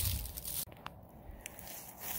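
Faint crackles and a few soft clicks, with a low rumble in the first half second.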